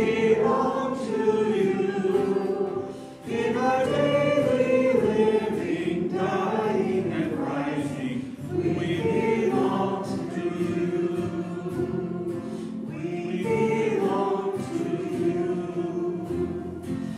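A small group of voices singing a hymn, with a short break between phrases about three seconds in.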